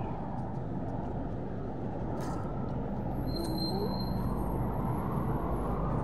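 Wind buffeting a phone's microphone, a steady, uneven low rumble.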